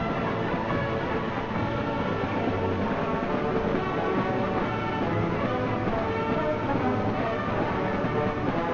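A symphonic band playing, with many instruments holding chords together.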